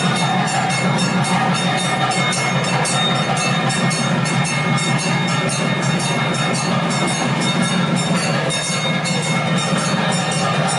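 Continuous loud temple percussion: bells rung rapidly together with drums and cymbals, a dense clattering din with a steady ringing tone over it.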